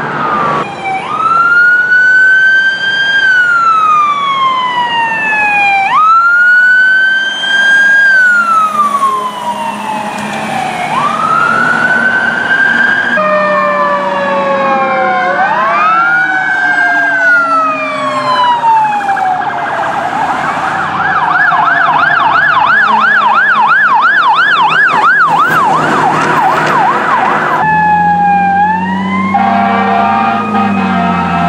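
Emergency vehicle sirens on responding apparatus. First an electronic wail sweeps up quickly and falls slowly, about every five seconds. Then two vehicles' sirens overlap, one switching to a fast yelp of about three sweeps a second; near the end a lower steady blare sounds with a siren rising.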